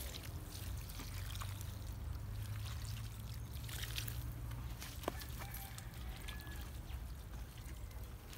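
Water pouring in a steady trickle from a large plastic jug onto loose soil, watering in freshly spread fertilizer. A single sharp click sounds about five seconds in.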